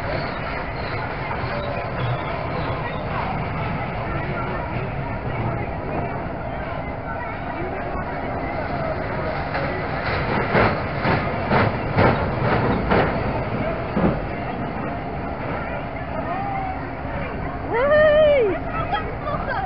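Fairground kiddie train ride running on its track, with a rhythmic clatter of wheels over the rail for a few seconds near the middle as the train passes close by, over a steady background of fair noise and chatter.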